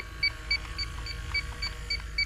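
Inficon D-TEK Stratus refrigerant leak detector beeping steadily, about three and a half short beeps a second, while it reads 23 ppm with no leak at the probe. It is a false reading that the owner cannot zero out, and he says the parts-per-million mode does not work.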